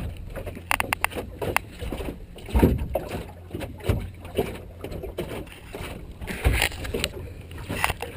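A small open sailboat under way: wind gusting on the microphone in irregular low rumbles over water and hull noise, with a quick run of sharp clicks about a second in.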